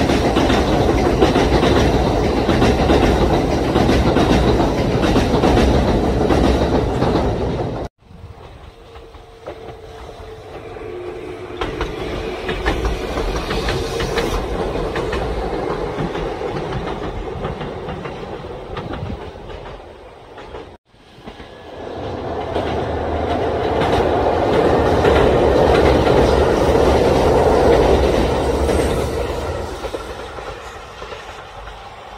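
Kintetsu electric trains passing at speed, wheels clacking over the rail joints. Three separate passes are cut together, breaking off abruptly about 8 and 21 seconds in; the later two swell up and die away as the train goes by.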